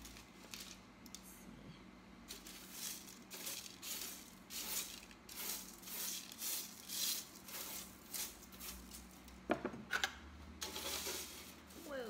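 A spatula scraping and aluminium foil crinkling on a foil-lined baking sheet: a quick run of short scrapes and rustles, then two sharp clicks near the end.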